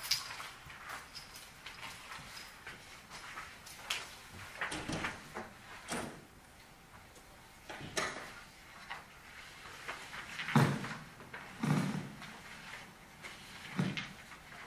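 Microphone handling noise as a microphone is adjusted to stop feedback: scattered bumps, knocks and rubbing against the mic, with the loudest thump about ten and a half seconds in.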